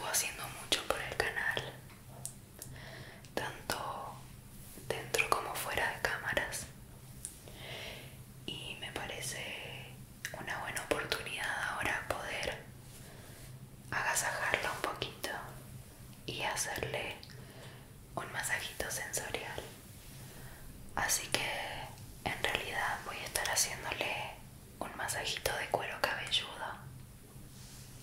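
A woman whispering in Spanish in short phrases with brief pauses, ASMR-style.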